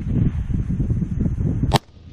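A single rifle shot from an AR-15 chambered in 6.5 Grendel, one sharp crack near the end, over a steady low rumble.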